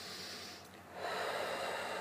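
A person taking a deep breath: a breath drawn in, then a louder breath blown out starting about a second in.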